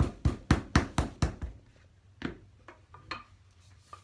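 A small lump of clay being wedged by hand on a canvas-covered table, thudding about four times a second, stopping about a second and a half in. A few lighter knocks follow.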